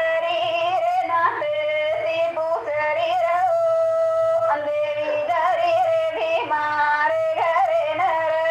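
A woman singing a Banjara folk song in a high voice, holding long steady notes with short wavering turns between phrases.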